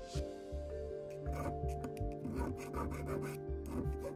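Hand file rasping in short repeated strokes across cast bronze, the strokes starting about a second in, over background music with a steady beat.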